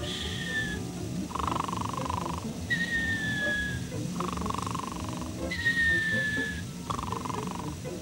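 Comic cartoon snoring: a rasping snore on the in-breath, then a thin whistle on the out-breath that falls slightly in pitch. The cycle repeats about three times, evenly, over quiet background music.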